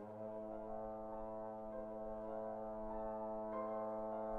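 Trombone entering with one long, steady low note held through, while the piano plays lighter notes above it.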